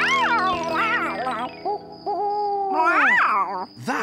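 Cartoon barn owl hooting: several rising-and-falling calls and one long drawn-out hoot in the middle, over soft background music.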